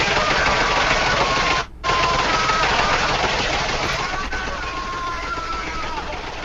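Loud, harsh gunfire sound effect played down a phone call line: a continuous din of shots with a faint wavering tone over it. It breaks off for a moment just under two seconds in.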